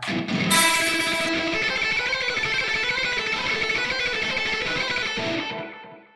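Electric guitar, an ESP LTD Deluxe, played as a fast alternate-picked run, a dense stream of notes lasting about five seconds that dies away near the end. The picking is as fast as the player can go without coordinating it with the fretting hand, so the notes are not locked together.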